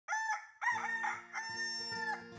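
A rooster crowing: one cock-a-doodle-doo in several notes after a short opening note, ending on a long held note.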